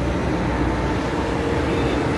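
Steady road traffic noise from passing cars, a continuous low rumble of engines and tyres.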